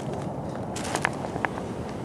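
Rustling and a few light clicks from jumpers' gear and the camera being handled, over a steady low hiss.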